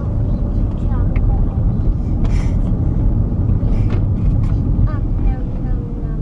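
Steady low road and engine rumble inside the cabin of a moving car, with a faint steady hum.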